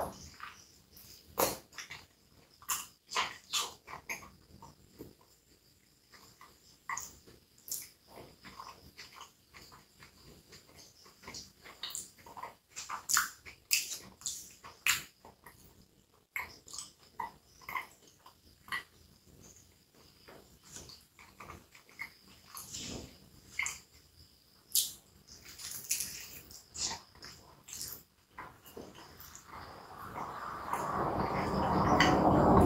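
Close-miked chewing of a hot dog in a soft bun: wet mouth clicks, smacks and soft squishing in an irregular stream, with a bite into the bread at the start.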